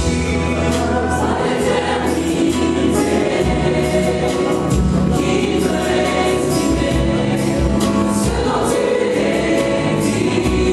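A gospel choir singing live with instrumental accompaniment and a steady percussive beat.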